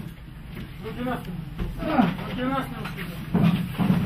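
Men's voices calling out short commands ("here, here") in bursts, over a steady low background rumble.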